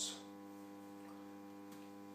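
Faint, steady electrical mains hum: a buzz with a stack of evenly spaced overtones that holds unchanged.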